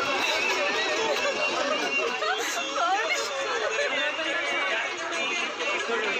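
Many people talking over one another at once, the chatter of passengers on a bus.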